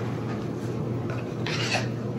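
Rubbing and handling noise as items are moved about on a kitchen counter, with a brief louder scrape about one and a half seconds in.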